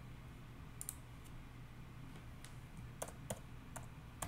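Faint computer keyboard keystrokes and clicks: a couple of isolated clicks about a second in, then a quicker run of keystrokes near the end as a word is typed.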